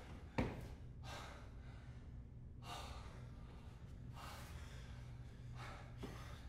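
A man breathing heavily and unevenly, four or five deep gasping breaths about a second and a half apart. A single sharp knock comes about half a second in.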